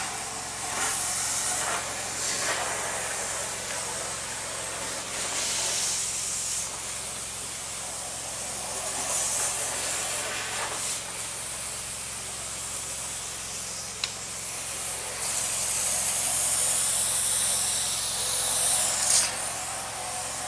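High-pressure hydrojetter (about 4,000 PSI, 12 gallons a minute) hissing as its nozzle sprays water through a drain pipe, with louder spraying surges every few seconds and the longest near the end. The jet is scouring a blockage of toilet paper, roots and sludge out of the line.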